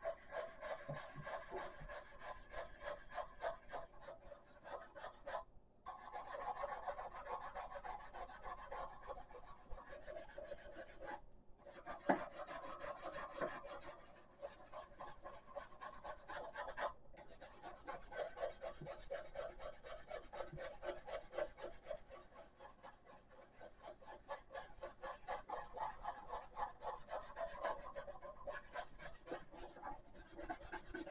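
Soapy toothbrush scrubbing a plastic blow-mold snowman: quick back-and-forth scratching strokes, broken by three short pauses.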